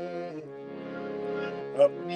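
A man singing a ghazal, holding one long ornamented note through the middle, with a sharper, louder syllable near the end.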